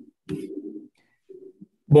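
Low, pitched cooing sounds in three short phrases, heard through a video-call microphone.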